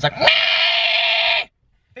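A car's warning beep for keys left in the ignition with the seatbelt unbuckled: one steady beep lasting just over a second that cuts off suddenly.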